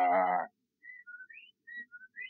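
A low, wavering moan from the creature that cuts off about half a second in, followed by several short, rising whistled whippoorwill calls with quiet gaps between them, a radio-drama sound effect.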